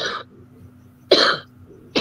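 A woman coughing in short bursts: one cough right at the start, another about a second in, and a third beginning at the very end.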